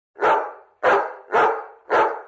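A dog barking four times in an even series, about 0.6 s apart, each bark starting sharply and fading quickly.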